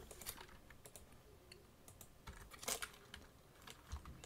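A few scattered, faint computer keyboard and mouse clicks, the loudest about two and three-quarter seconds in.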